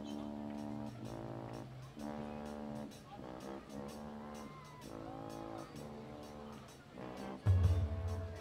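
Marching band brass playing held chords in short phrases of about a second each, with a loud low hit from the low brass and drums near the end.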